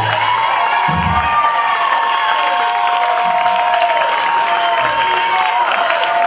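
A live audience applauding and cheering, with long shouts and whoops, just after the band's music stops. A short low thud comes about a second in.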